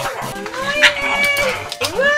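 A pug's drawn-out whining howl, rising and then falling in pitch and lasting about a second, with a second howl starting near the end.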